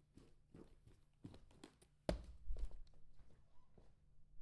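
Footsteps and small knocks, with a heavier thud about two seconds in and a couple more just after.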